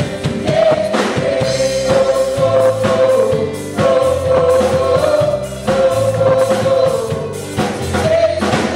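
Live gospel worship singing: women's voices in harmony, a lead singer with backing singers, over a band. The voices hold long notes in phrases a second or two long.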